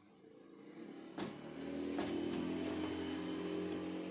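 A motor vehicle's engine hum, growing louder over the first second and a half and then holding steady, with a couple of light knocks.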